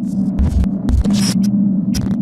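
Electronic intro sound design: a steady low drone with two deep bass thuds in the first second and short hissing whooshes, the longest about a second in.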